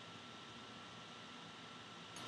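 Faint room tone: a steady low hiss with a thin, steady high tone running under it.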